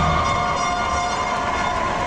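A sustained, horn-like electronic chord of several held tones, sinking slightly in pitch, over a low rumble.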